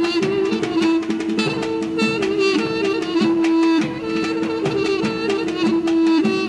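Armenian folk dance music: a melody over a steady held drone note, driven by regular beats of a large double-headed dhol drum.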